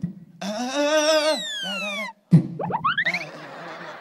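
A beatboxer making vocal effects into a handheld microphone. A held, wavering hum runs with whistle-like sweeps falling in pitch over it. After a short break comes a kick-drum hit, then quick upward sweeps.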